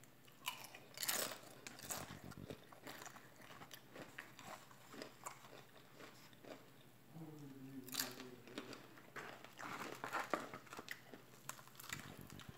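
A person biting and chewing crunchy food close to the microphone, with scattered crunches, the loudest about a second in and again about eight seconds in. A short hum comes a little past the middle.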